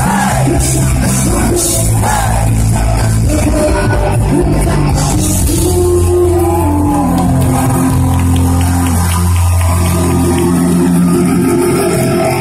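Live rock band playing: electric guitars, bass and drums with a voice singing over them, loud and steady throughout, recorded on a phone's microphone close to the stage.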